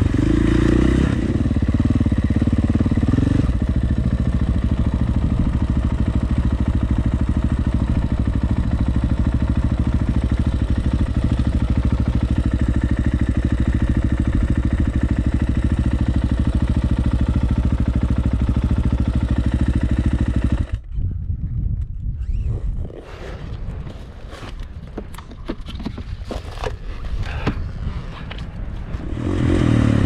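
2019 KTM 450 dirt bike's single-cylinder four-stroke engine running at a steady pace, heard from a helmet-mounted camera. About two-thirds of the way through the sound drops away suddenly to a much quieter, uneven stretch with scattered clicks and scrapes. The engine picks up again near the end.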